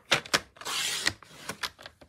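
Stampin' Up! paper trimmer cutting a sheet of cardstock: a couple of clicks as the sheet and cutting head are set, then the blade drawn along its track with a short rasping cut, followed by a few light clicks and taps of handling.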